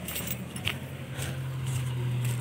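Light metallic jingling clinks, a couple of times, as someone walks, over a steady low engine hum that grows a little louder in the second half.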